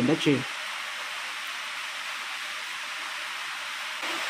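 A short word of speech at the very start, then a steady, even hiss of background noise with nothing else in it.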